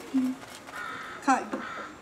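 A woman's voice over a microphone making short hesitant sounds, a brief hum and halting vocal noises, with a short rising vocal sound about a second in.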